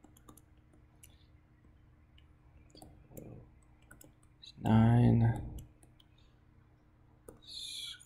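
Faint, scattered clicks and taps of a stylus writing on a tablet screen. About five seconds in, a brief voiced sound of about a second, like a filled pause, is the loudest thing.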